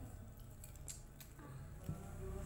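Toasted bread being eaten: a few faint, crisp crunches, the loudest a sharp one near the end as a fresh bite is taken.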